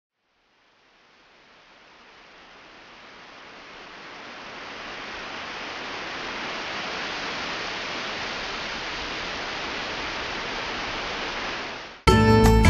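A steady, even rushing noise with no pitch or rhythm. It fades in slowly over the first several seconds, holds, then drops away quickly near the end.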